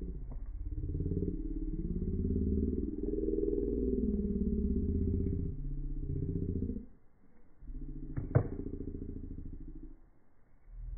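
A motor engine running, its pitch rising and falling. It drops away briefly about seven seconds in, then returns, with one sharp click soon after.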